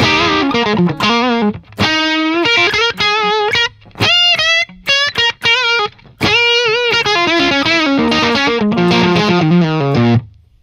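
Overdriven electric guitar playing lead phrases through a Friedman Buxom Boost pushing a vintage blackface tube amp into breakup. Several short phrases with brief breaks between them, held notes shaken with vibrato, closing on a run of falling notes.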